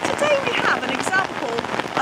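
Heavy rain falling steadily, a dense, even patter of drops close to the microphone.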